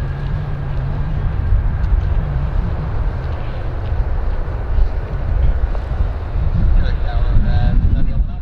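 Jet airliner on its landing roll, its engines running as a dense low rumble, with heavy wind buffeting on the microphone. Short pitched fragments near the end may be voices.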